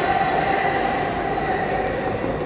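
Steady whirring of a large electric pedestal fan running close by, with a faint steady hum.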